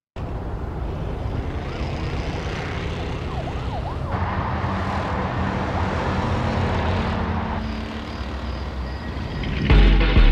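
Cinematic night-city ambience at the start of a music video: a steady low traffic rumble with a brief siren wail. A heavy bass beat cuts in just before the end.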